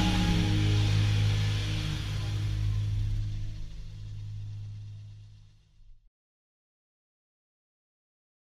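The last chord of a country song rings out with a strong bass and fades away, ending in silence about six seconds in.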